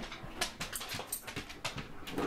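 Siberian husky's claws clicking on a hardwood floor as he moves about: a run of light, irregular clicks, several a second.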